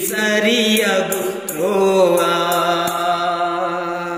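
Telugu Shiva bhajan sung by a man: long, wavering held notes over a beat of short, high strikes. The beat stops about three seconds in and the song begins to fade.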